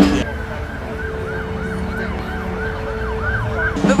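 A siren yelping, its pitch sweeping up and down about three to four times a second, over a faint steady tone. It starts just after the cut and stops shortly before the end.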